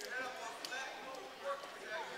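Background voices of spectators and coaches at a wrestling match, indistinct and fainter than the commentary, with a few sharp clicks.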